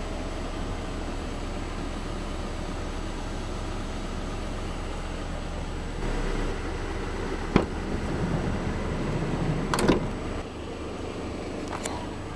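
Mazda 5 minivan's manual rear sliding door being worked: a sharp click about halfway through, a rolling, rising slide, then a loud clunk near the end as it latches, with a steady low hum underneath.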